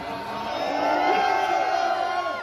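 A large live crowd cheering and whooping, many voices shouting at once, swelling to its loudest about halfway through.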